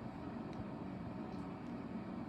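Steady low room hum, with a couple of faint small clicks from hands working a foam crown's tape tab.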